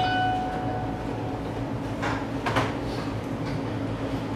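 Room tone in a meeting room: a steady low hum runs throughout. A brief high pitched squeak-like tone sounds at the start and fades within about a second, and two short rustles come about two seconds in.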